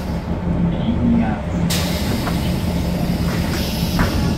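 Cabin sound of a Volvo 7000A articulated bus: its Volvo D7C six-cylinder diesel running with a steady low hum, and one sharp click a little under two seconds in.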